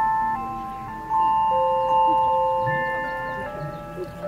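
Electronic keyboard playing held chords with a bell-like tone, the chord changing a few times.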